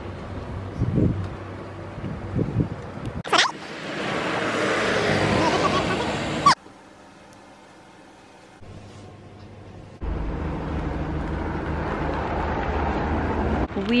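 Outdoor street sound cut together in short pieces: a car passing with a swelling hiss of tyres, then wind rumbling on the microphone, with a few seconds of quiet indoor room tone in between.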